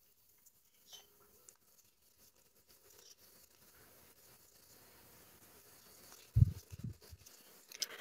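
Faint rustle of yarn being worked with a crochet hook, with two soft low thumps about six and a half seconds in.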